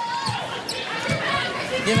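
A basketball being dribbled on a hardwood court, a few bounces, heard over a murmur of arena crowd and voices.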